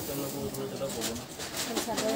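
Crisp rustling of a mekhela sador's fabric as it is unfolded and lifted, strongest in the second half, over low wavering vocal sounds.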